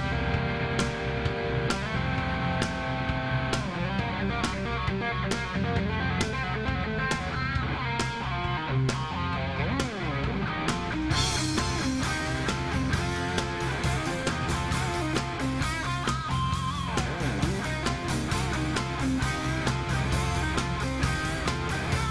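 Rock power trio playing live: an electric guitar lead with bent notes over bass guitar and a steady drum beat, with no vocals.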